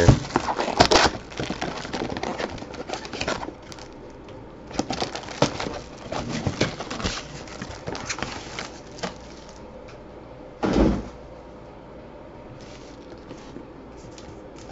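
Handling noise from a cardboard trading-card hobby box being opened and its card packs taken out and laid down: scattered rustles, scrapes and light clicks, with one louder burst of handling about eleven seconds in.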